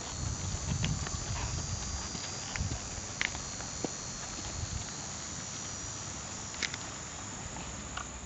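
A horse walking on grass and dirt, its hoofbeats landing as soft, irregular thuds mostly in the first half, over a steady high chorus of insects. A few sharp clicks stand out, one about three seconds in and another near the end.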